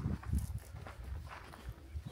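Footsteps of a hiker walking on a dirt trail: a few soft, uneven steps.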